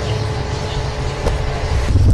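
Low, steady rumble of outdoor background noise with no distinct events.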